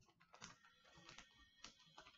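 Very faint, scattered small clicks and rustles of small plastic packaging being handled in the hands.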